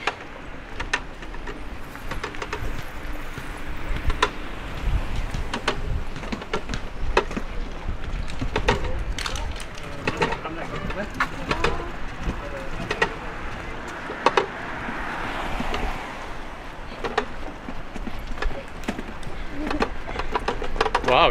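A hand-pulled rickshaw rolling along the street, with irregular knocks and rattles from the cart and running footsteps, over a steady rumble of wind on the microphone.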